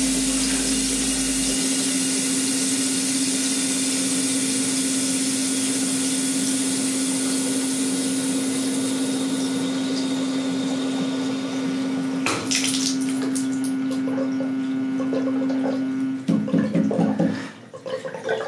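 Shower water running with a steady hum while the stepper-driven valve is turned toward off. The top of the hiss thins about ten seconds in and a knock comes a couple of seconds later. Near the end the hum cuts off and a few uneven knocks follow, but the water does not fully shut off.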